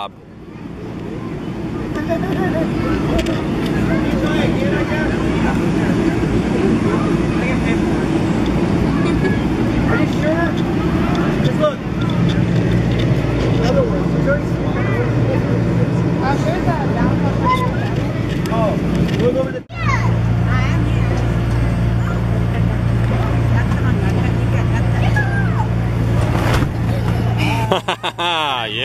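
Steady low hum of the electric blower fan that keeps an inflatable bounce house up, growing louder in steps around the middle. Children's shouts and chatter are heard over it.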